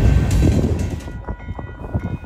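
Freight train rolling past with a heavy low rumble, which falls away about a second in and leaves a few faint steady tones.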